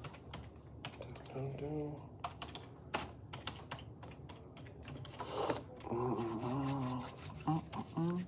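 Typing on a computer keyboard, in quick irregular clicks, as a sale is rung up at a service counter.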